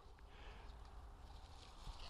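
Near silence, with only a faint, soft rustle of hands working a binding string around a leafy fruit-tree branch.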